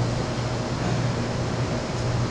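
Steady background room noise: a constant low hum under an even hiss, with no distinct strokes or knocks.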